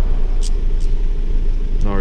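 Steady low rumble of engine and road noise inside a pickup truck's cabin while driving, with a couple of faint clicks. A man's voice starts just before the end.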